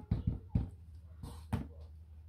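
A clear acrylic stamp block tapped repeatedly onto a Memento ink pad to ink it: a handful of short knocks, most in the first half second and one more about a second and a half in.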